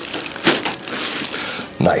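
Chiropractic neck adjustment: one sharp crack as the cervical joints release, about half a second in.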